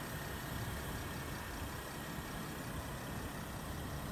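Steady, low outdoor background noise with a low rumble and no distinct events.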